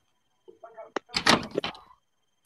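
A door opening as a sound effect on a recorded textbook dialogue: a faint creak, a sharp latch click about a second in, then the door swinging.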